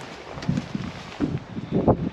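Wind buffeting the camera's microphone, with a few dull low bumps; the loudest comes near the end.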